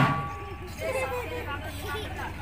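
A single metallic clang from a stroke on a large metal-shelled drum, ringing for about half a second. Onlookers' voices follow.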